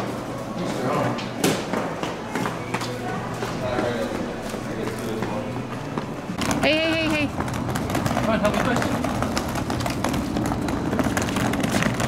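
Small hard-shell rolling suitcase's wheels running over a tiled floor, with footsteps and many small clicks. About six and a half seconds in there is a short squeal that rises and falls in pitch, and after it the background grows fuller and lower.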